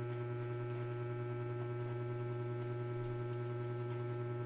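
Steady low electrical hum with several fainter, higher steady tones over it.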